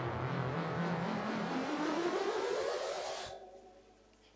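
Rising whoosh sweep of the kind added at an edit transition: a hissing rush with a tone that climbs steadily in pitch for about three seconds, then cuts off and fades away near the end.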